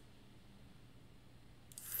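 Near silence: faint room tone with a low steady hum, until a man begins speaking at the very end.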